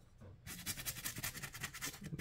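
A toothbrush scrubbing in quick back-and-forth strokes, a fast, even scratchy rhythm that starts about half a second in.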